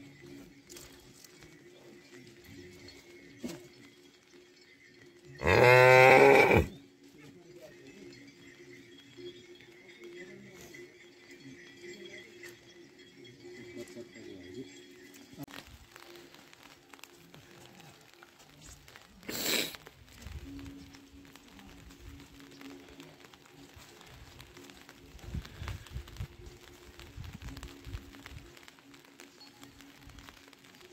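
A yak calls once about six seconds in, a loud call lasting about a second; this is the loudest thing heard. Later a brief sharp sound stands out over a faint steady low hum.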